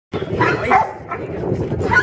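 A young dog giving several short, high yips in quick succession, with people's voices alongside.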